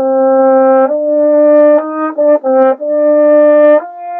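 French horn playing a slow phrase of long held notes that move up and down in small steps, with a few shorter notes, separated by brief breaks, about two seconds in.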